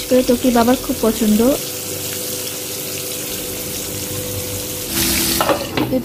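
Slices of spiny gourd (kakrol) frying in oil in a nonstick pan, a steady sizzle. About five seconds in there is a brief louder burst of hiss, as the pan is covered with its glass lid.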